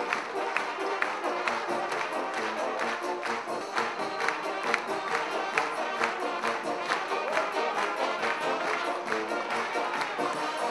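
A Balkan brass band playing live, horns carrying the tune over a steady beat of about two strokes a second.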